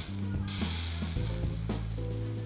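A fused Clapton vape coil on an RDA deck fired while wet with e-liquid, sizzling in a burst that starts about half a second in and stops after about a second, over steady background music.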